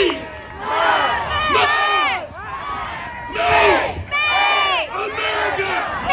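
A rally crowd shouting together in about four bursts, many voices at once, answering a speaker's call to repeat after him.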